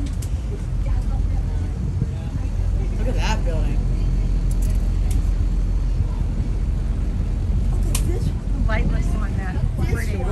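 Motor cruiser underway: a steady low rumble of its engine and wind on the microphone, with a few faint voices.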